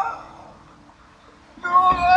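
A high voice, with no words, holding notes that bend down at their ends: one fading away just at the start, then a louder one near the end.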